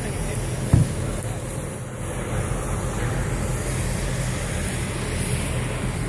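Pickup truck engines running steadily with a low rumble, with wind noise on the microphone. A short knock sounds near the start.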